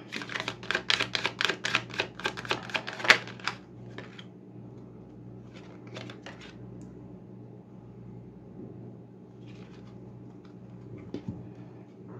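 A deck of cards being shuffled by hand: a rapid run of crisp card clicks for about three and a half seconds, then a few scattered clicks as cards are handled and one is drawn and laid down.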